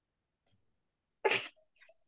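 One short, breathy vocal burst from a person, about a second in, after near silence.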